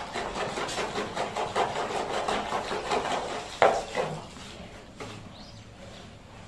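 Rapid scraping strokes of wet cement mortar being scooped off the floor into a plastic pan, with one sharp knock about three and a half seconds in; the scraping dies down near the end.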